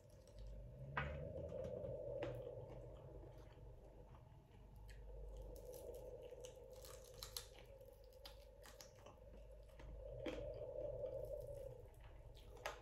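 A person chewing food close to the microphone, with wet mouth clicks and soft crunches, in three spells of chewing separated by quieter pauses.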